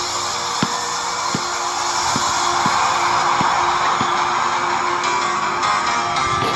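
Music playing throughout, with a basketball being dribbled on an outdoor hard court: short low bounces at an uneven pace of roughly one every 0.7 s, stopping about four seconds in.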